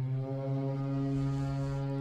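Boat motor running at a steady speed, heard from on board: a constant low hum that holds one pitch throughout.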